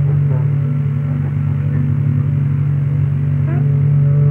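Signalwave music: a loud, steady low drone with faint short sliding tones above it.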